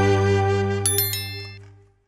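The song's final held chord fading out to silence. About a second in, a bright bell-like ding sound effect is struck about three times in quick succession.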